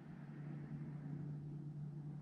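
A steady low hum, faint room background with no other distinct event.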